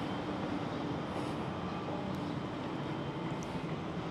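Steady background noise with a faint low hum and no distinct events.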